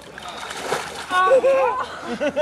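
Icy water splashing as a winter swimmer wades into a hole in the ice, followed about a second in by loud, high cries from the bathers, rising and falling in pitch.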